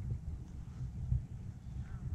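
Wind buffeting a handheld camera's microphone: an uneven low rumble with soft thumps.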